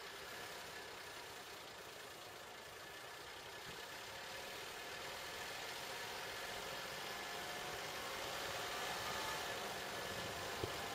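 Steady car engine and road noise, growing a little louder toward the end.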